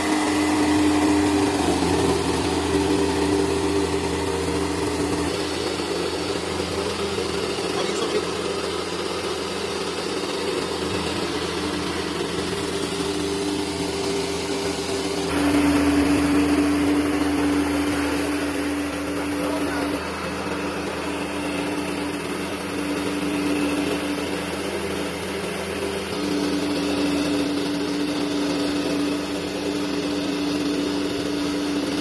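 Electric home-use combined rice mill running steadily as it hulls and polishes paddy, a continuous motor-and-rotor hum with a steady tone. The sound changes abruptly about halfway through and keeps running.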